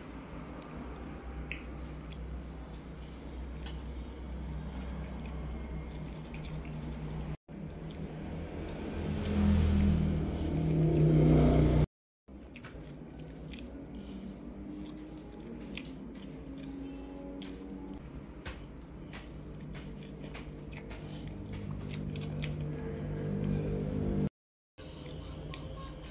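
Close-miked chewing and squishing of soft sponge cake and whipped cream, with light clicks of a metal fork. A louder, lower stretch of mouth sound comes about halfway in, and the sound cuts out briefly twice.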